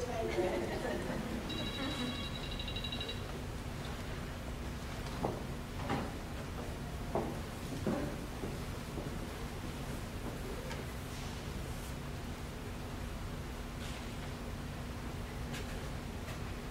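Quiet room tone of a large hall: a steady low hum and faint scattered voices. A short high electronic tone sounds for about a second and a half, starting about a second and a half in.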